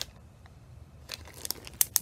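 A small clear plastic bag holding a wax melt crinkling as it is handled: a quiet first second, then a few short, sharp crackles.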